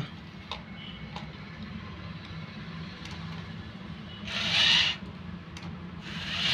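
Small electric gear motor of a toy RC loader whirring steadily under load, with a louder burst of whirring and grinding about four seconds in lasting about half a second, and a few light clicks. The arm is straining and cannot lift the RC jeep: too much weight.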